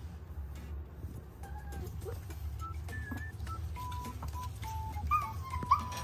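Noble Shepherd puppy (gray wolf × German Shepherd hybrid, about a month old) whimpering in thin, high whines. They are sparse at first, then come quicker and sharper near the end, over a low steady hum.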